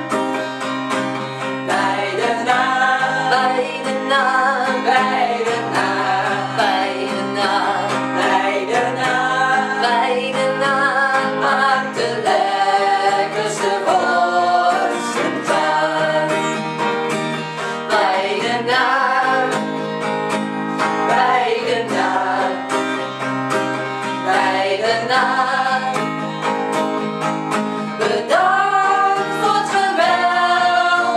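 A group of women singing a song in Dutch together, accompanied by an acoustic guitar.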